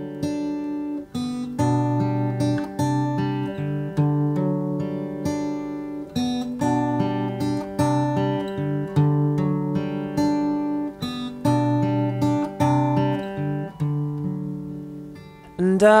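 Background music: a plucked acoustic guitar playing a steady run of notes, easing down shortly before a man's singing voice comes in at the very end.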